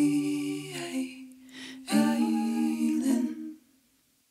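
A woman humming long held notes a cappella, with more than one pitch sounding at once. The notes change about a second in and again about two seconds in, and the last one fades out about three and a half seconds in.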